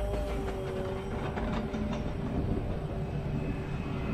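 A trombone mouthpiece buzzed on its own, holding one low pitch that sags slightly and fades near the end, with the pitch moved by air speed alone. Underneath it runs the rumble of a steel roller coaster train on its track.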